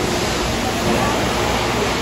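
Loud, steady din of plastics processing machinery running on a factory floor, an even rushing noise with a faint constant hum in it. Voices of people talking are faintly audible beneath it.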